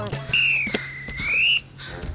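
A whistle-like tone that dips in pitch and rises back again, lasting just over a second, over soft background music, with a single click partway through.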